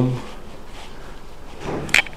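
Interior wooden door being opened: a short dull knock and then a sharp click near the end.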